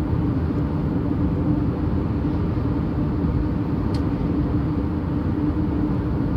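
Steady low rumble of road and engine noise inside a van's cabin while driving at highway speed.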